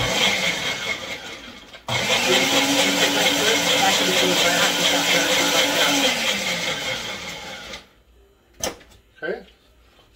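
Single-serve push-down blender running with blueberries and blueberry vodka in the cup. It dips briefly about two seconds in, then runs hard again for about six seconds, its motor pitch rising as it comes up to speed and falling before it cuts out. A single click follows near the end.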